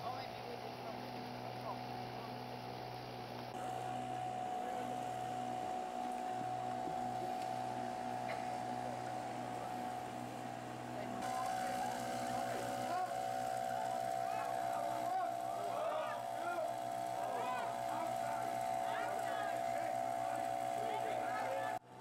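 Steady drone of a wooden excursion boat's motors under way. Indistinct overlapping voices run over it and grow busier from about halfway.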